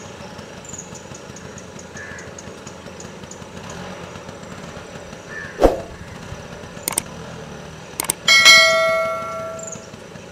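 Subscribe-button overlay sound effects: a swoosh about halfway through, two clicks, then a bell ding, the loudest sound, that rings for about a second and a half. Underneath runs a steady low engine-like hum, with faint high chirps repeating.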